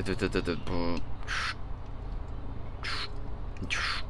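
A man's wordless, croaky vocal exclamation in the first second, followed by three short hissing sounds.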